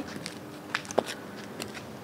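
Footsteps of Pleaser Captiva-609 six-inch platform heels with clear platforms on concrete pavement: a few sharp, uneven clacks of heel and sole striking the ground, the loudest about a second in.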